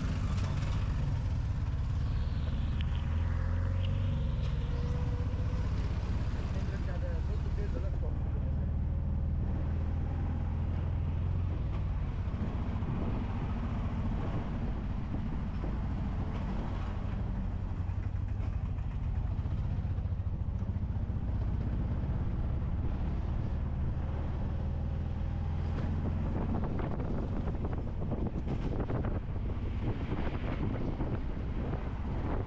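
Small tuk tuk engine running as the three-wheeler drives along, a low steady drone whose note shifts a few times as it changes speed.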